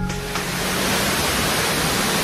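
Steady, loud rushing of a large waterfall close by, with the tail of background music still faintly under it at the start.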